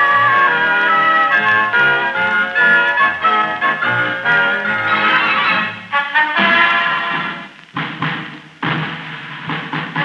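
Orchestra playing a medley of tunes from the First World War, with the dull, narrow sound of an old radio broadcast recording. The music thins out briefly about eight seconds in, then comes back in suddenly at full strength.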